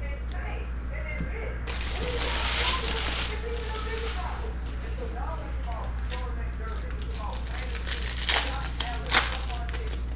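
Foil trading-card pack wrappers crinkling and cards being handled, with a few sharp crackles near the end, over a steady low hum.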